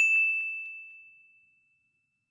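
A single high, bell-like ding: an outro chime sound effect, struck once and ringing out, fading away over about a second and a half.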